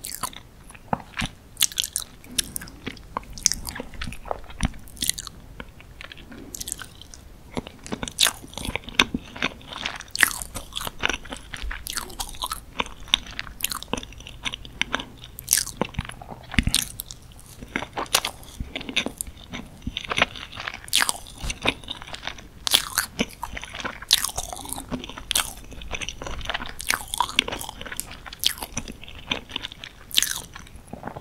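Close-miked chewing of moist dark chocolate cake with chocolate sauce: mouth sounds with many small, irregular clicks running on throughout.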